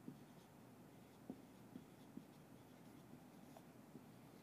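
Faint marker writing on a flip-chart easel: soft pen strokes with a few light ticks of the tip against the board.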